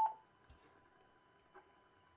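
Yaesu FT-450D transceiver giving one short, high key beep at the start as a front-panel control is pressed, confirming the key press. Then two faint clicks.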